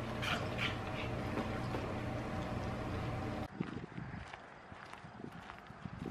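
A dog eating from a spoon and bowl held to its mouth, a few short wet mouth sounds over a steady low hum. About three and a half seconds in, the sound cuts to quieter footsteps of a person and dog walking on a gravel path.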